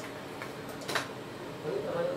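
A few light clicks, the clearest about a second in, over quiet room tone.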